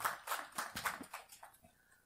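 Small objects being handled: a quick run of light clicks and taps, about six a second, that dies away about one and a half seconds in.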